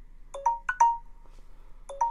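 Smartphone timer alarm going off at the end of a 30-second countdown: a quick phrase of four chime-like notes, the last one held and fading, repeating about every one and a half seconds.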